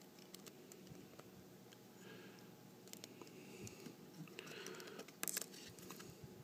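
Faint handling of small plastic action-figure parts: scattered light clicks and rubbing as a tiny gun is pressed into a figure's hand, with a sharper cluster of clicks a little after five seconds.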